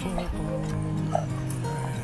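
Street musicians playing live music, with held low notes that change in steps.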